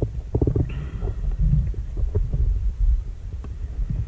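Underwater sound of a scuba diver's breathing gear heard through the camera housing: a low rumble with irregular bubbling pops and crackles, and a short hiss of gas about a second in.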